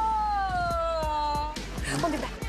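A long, high-pitched cry from an excited fan, one held note sliding slowly downward in pitch, over background music with a steady beat; a short burst of crowd noise follows near the end.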